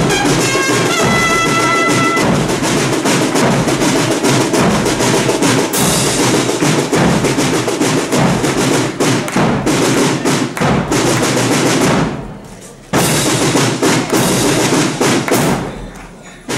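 Concert wind band playing, brass and woodwinds over busy percussion with many sharp hits. About twelve seconds in the music falls away for under a second, then the full band comes back in at once.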